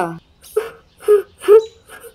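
A voice laughing mockingly in short 'ha' bursts, four of them about two a second.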